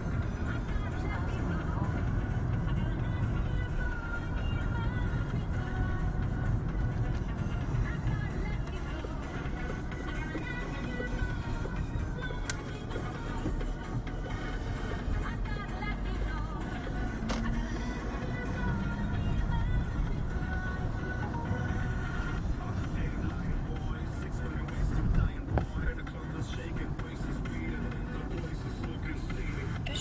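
Music playing from a car radio inside a moving car's cabin, over a steady low rumble of engine and road noise.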